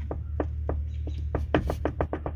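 Driveshaft U-joint being worked by hand, giving irregular light clicks and knocks with one louder knock about one and a half seconds in: the joint has play, a little loose. A low steady hum runs underneath.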